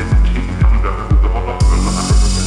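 Electronic music track with a deep kick drum hitting about twice a second, each kick dropping in pitch. The high end is filtered out for about a second and opens back up near the end.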